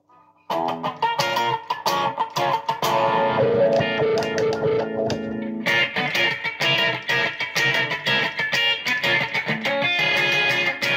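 Electric guitar played through a Zoom G2.1U multi-effects pedal preset: picked notes and strummed chords start about half a second in, with a chord held around the middle. The tone turns noticeably brighter and more trebly from about six seconds in.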